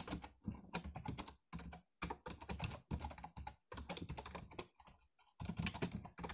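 Typing on a computer keyboard: quick, irregular runs of keystrokes, with short pauses about two seconds in and again around five seconds in.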